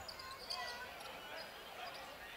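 Faint basketball court sound in an arena: a basketball bouncing on the hardwood floor, with sneakers and distant voices in the hall.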